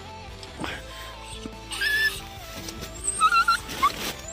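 Small dog whimpering in short high-pitched whines, once about two seconds in and again in a wavering run near the end, over background music. The dog is pleading to be let into the tent.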